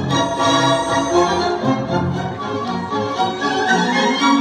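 Recorded orchestral backing music with bowed strings, playing through loudspeakers in an instrumental passage between a singer's vocal lines.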